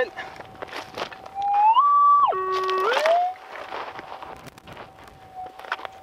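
Metal detector's steady threshold hum. About a second and a half in, a target signal makes the tone rise higher, drop low, then glide back to the hum: the gold target is in the scooped-out dirt. Light scuffs and clicks come from the coil and boots on the stony ground.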